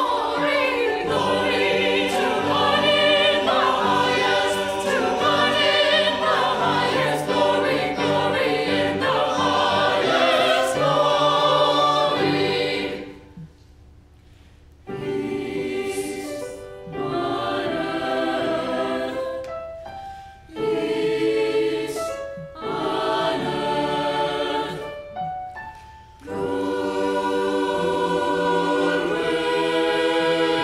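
Mixed choir singing in parts, with men's and women's voices together. The singing runs unbroken for about the first half, stops for a two-second pause, then goes on in short phrases with brief breaks between them.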